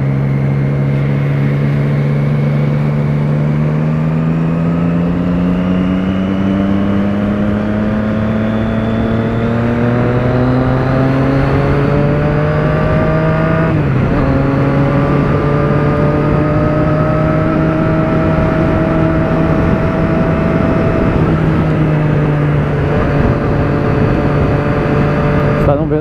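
Motorcycle engine heard from the rider's seat, rising slowly in pitch as the bike accelerates. About halfway through it breaks briefly, as at a gear change, then holds a steady pitch and drops a little near the end, over a steady rush of wind noise.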